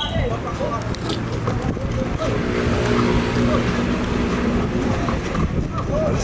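A motor engine's steady hum, which comes in about two seconds in and fades near the end, over a constant outdoor background noise with voices.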